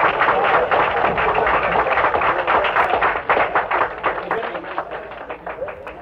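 Small crowd applauding, a dense patter of hand claps that dies away over the last couple of seconds, heard on a dull old home tape recording.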